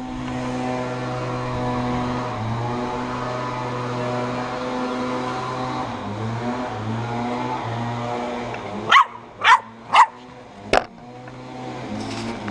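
Steady hum of a DJI Phantom 4 quadcopter's motors and propellers, its pitch shifting up and down a few times. About nine seconds in, a dog barks three times in quick succession, followed by a sharp click.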